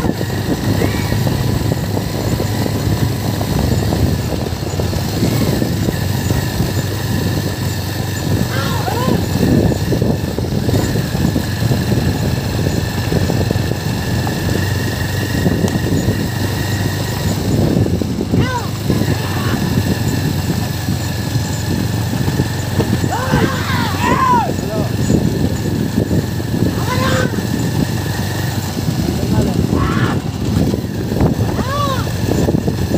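A motor vehicle's engine running steadily close by, with a constant low rumble, and a few short rising-and-falling shouts or calls scattered through, the clearest just before the last third.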